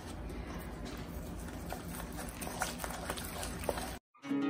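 A wooden spoon beats an egg into choux pastry dough in a stainless steel bowl: a faint, soft working of the dough with scattered light knocks of the spoon against the bowl.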